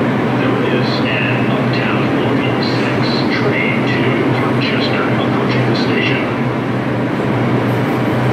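New York City subway train standing at the platform, its onboard equipment giving a steady low hum.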